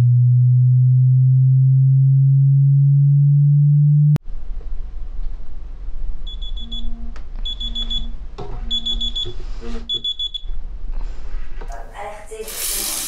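A loud, low steady hum cuts off suddenly about four seconds in. Then a smartphone alarm beeps in four short bursts of rapid high beeps, about a second apart.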